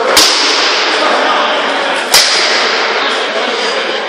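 Two sharp cracks of rattan weapons striking in armoured sparring, about two seconds apart, each ringing briefly in the hall, over a steady background din.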